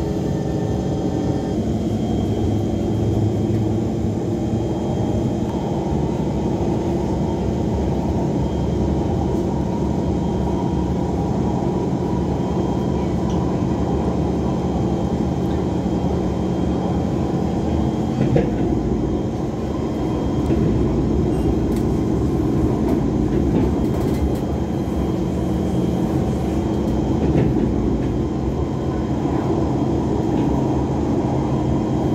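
Steady running noise of an elevated metro train heard from inside the moving carriage: a continuous rumble of wheels on the rails, with one brief knock a little past the middle.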